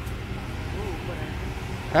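Low, steady rumble of road traffic, with faint voices under it.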